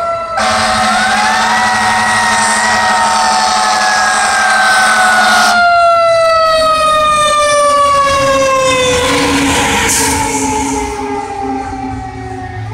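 Fire truck siren wailing: it rises in pitch in the first second or so and then falls slowly and steadily for about ten seconds. A steady lower tone sounds under it for roughly the first half.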